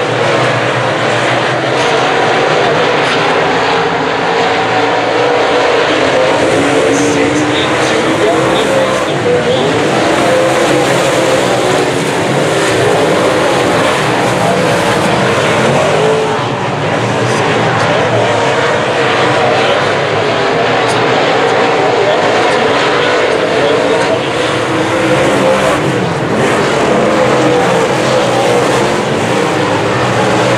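A pack of USRA A-Modified dirt-track race cars running laps, their V8 engines rising and falling in pitch as they power through the turns.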